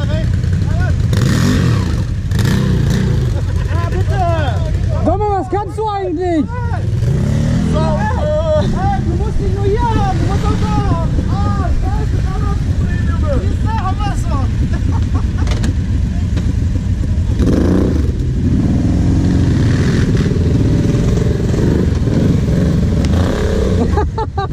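ATV engines running at idle close by, with shouting voices over them for much of the time. In the last several seconds the revs rise as a quad pulls away.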